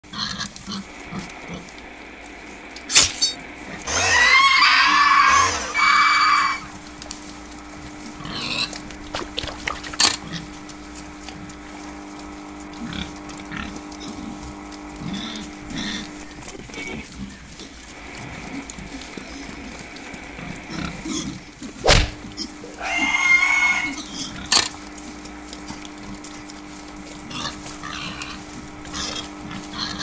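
Sound-design soundtrack of pig squeals: two shrill, pitch-bending squealing bursts of a couple of seconds each, about four seconds in and again past twenty seconds. Between them come several sharp knocks and a steady low hum that drops out for a few seconds midway.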